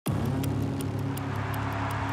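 A low sustained drone, with a steady, regular high ticking laid over it, in a cinematic intro sound bed.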